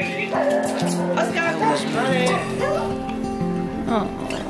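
Background music with held, stepped notes, over a whippet's excited whimpering and yips in short rising and falling whines.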